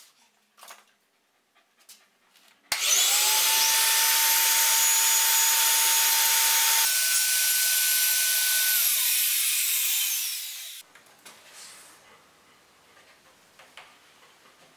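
Motor of a portable power mortiser starting suddenly and running at a steady high whine while it cuts a mortise in a wooden stool part. About halfway through, its pitch changes, and it then winds down with a falling tone and stops.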